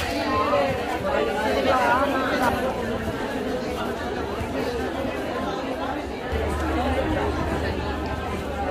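Crowd chatter: many people talking at once, their voices overlapping so that no words stand out.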